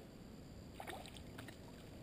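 Low, steady rumble of wind and water lapping against the boat's hull, with a couple of short sharp sounds about a second in while a small bass is reeled to the surface.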